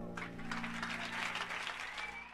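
Jazz club audience applauding at the end of a song, a dense patter of clapping that starts just after the last sung note has died away, with a low held chord from the band still sounding underneath.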